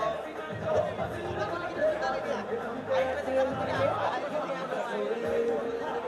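Crowd chatter: many people talking at once, with no single voice standing out.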